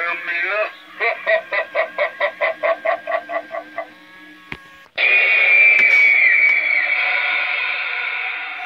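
Animated Halloween demon prop's built-in speaker playing its recorded voice track. The end of a spoken line runs into a rapid evil laugh of about a dozen short "ha"s. After a click, a loud, sustained, high screech starts suddenly about five seconds in.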